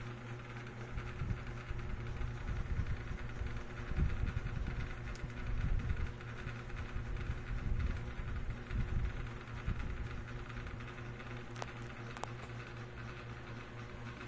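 A steady low mechanical hum, like a small motor or fan, with an uneven low rumble and a few faint clicks.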